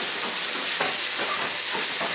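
Sliced peppers and onions sizzling in a hot frying pan as they are stir-fried and tossed over a high gas flame: a steady, loud hiss.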